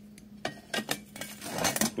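A welded steel bracket being lifted and handled on a steel welding table: a few light metallic clinks and knocks, metal against metal.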